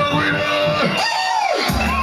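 Live jungle/drum-and-bass music played loud through a festival sound system, with the crowd cheering. The deep bass drops out and comes back in shortly before the end.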